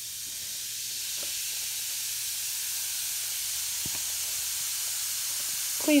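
Beaker Creatures reactor pod fizzing as it dissolves in a glass bowl of water: a steady high hiss of bubbles that grows a little louder over the first second or so.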